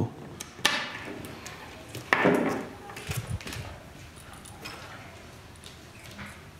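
Handling noise of needle-nose pliers and a plastic zip-tie seal tag as the strap is pulled out of its lock: a sharp click about half a second in, a louder scrape about two seconds in, and a few lighter knocks, as the tag and pliers are put down on the table.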